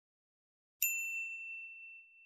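A single bell-like ding sound effect about a second in, ringing on and fading away over a second and a half: the chime of a notification bell being switched on in a subscribe-button animation.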